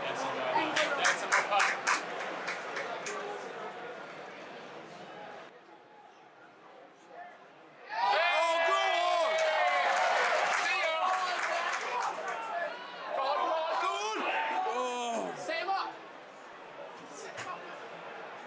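Men's voices in a stadium hospitality box, loud and unclear, mixed with stadium crowd noise. A quick run of sharp claps or taps comes in the first two seconds, then a quieter lull before the voices pick up again about eight seconds in.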